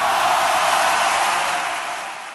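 Electronic static hiss with no low end, slowly fading toward the end.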